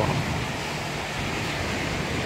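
Small waves breaking and washing up a sandy beach in a steady rush of surf, with some wind on the microphone.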